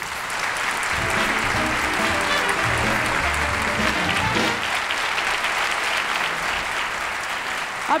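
Studio audience applauding steadily, with a short piece of music playing under the clapping from about one second in until about four and a half seconds in.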